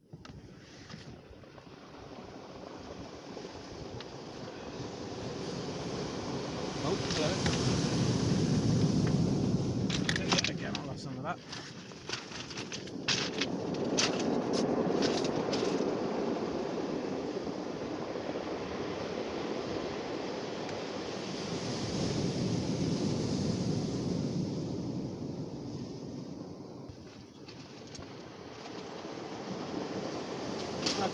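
Sea waves breaking on a shingle storm beach, the rushing noise swelling and fading in slow surges several seconds apart. A run of sharp clicks comes near the middle.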